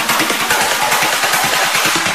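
Tech trance music in a breakdown: the kick drum and bass are gone, leaving a steady bright wash of noise with faint ticking high percussion.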